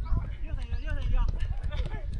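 Several players' voices calling out and overlapping during a football scrimmage, over a steady low rumble of wind on the microphone.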